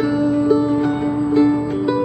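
Mandolin picked in a slow folk tune, short plucked notes ringing over one long held note.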